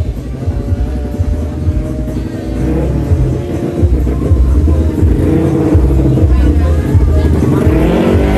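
Drag-racing motorcycle engine at high revs, its pitch dropping slightly early on and climbing again near the end, with music and voices mixed in.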